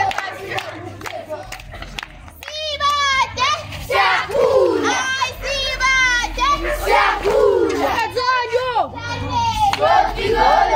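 A crowd of children and adults shouting and cheering, with shrill, trilling cries; it swells suddenly about two and a half seconds in and stays loud.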